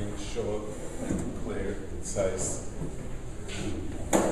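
Indistinct low speech from a man, with a few soft handling noises such as rustles or light knocks.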